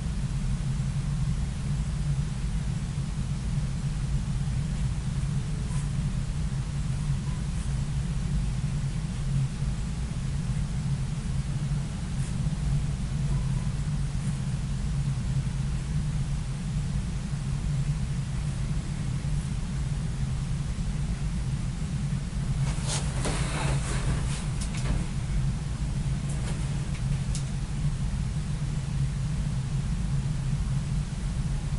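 Steady low background hum, with a brief scratchy rustle and a few light clicks about 23 to 27 seconds in.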